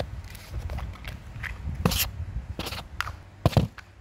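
A few short knocks and scrapes from objects being handled close by, the loudest about three and a half seconds in, over a low hum.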